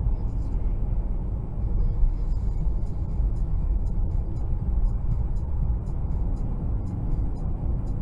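Steady low rumble of road and engine noise inside a car travelling at freeway speed.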